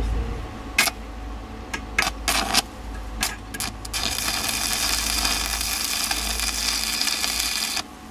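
Electric arc welding on a steel rod. The electrode is struck several times in short sputtering bursts, then a steady crackling arc holds for about four seconds and cuts off suddenly near the end as a weld bead is laid.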